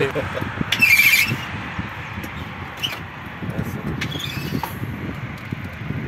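A brief high-pitched squeak about a second in, followed by uneven low rumbling.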